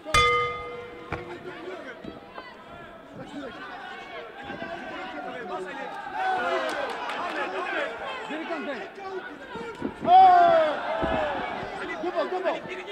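Boxing-ring bell struck at the start, its tone ringing on for about a second and a half to open the round. Cornermen and crowd then shout throughout, loudest about ten seconds in.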